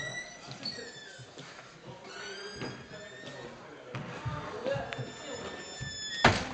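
Indistinct chatter of a group of children in an echoing squash court, with several high squeaks and a few short knocks.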